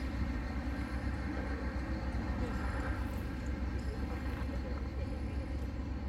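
Steady low rumble of traffic on a busy road alongside the bike path, mixed with outdoor air noise.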